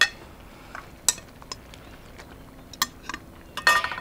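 Metal kitchen tongs clinking against a glass mixing bowl while spaghetti is lifted, a handful of sharp clinks spread over a few seconds, the first the loudest.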